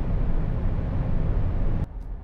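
Wind and tyre noise inside the cabin of a Jaguar I-Pace electric SUV driving at about 208 km/h, its limited top speed: a steady, loud rush heavy in the low end. Near the end it drops suddenly to a quieter level.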